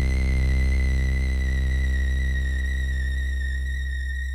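Sustained electronic tones: a deep buzzing drone under a high, thin whistling tone that slowly sinks in pitch, the whole fading gradually.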